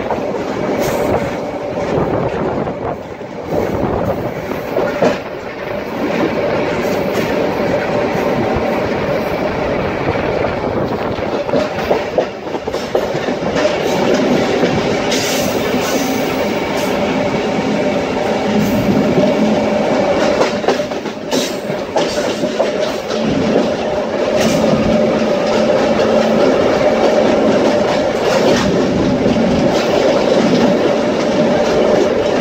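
Série 500 electric commuter train running along the line, heard from beside the car's open side: a steady rumble of wheels on rail with a constant hum and occasional sharp clicks over the track.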